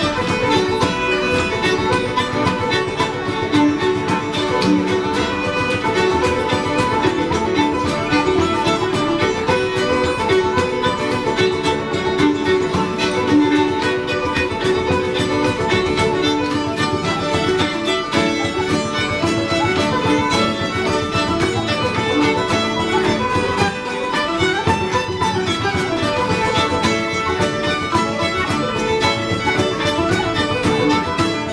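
Irish traditional session playing a reel together: fiddle leading, with tenor banjo, hammered dulcimer, flute and guitar. The playing is steady and unbroken.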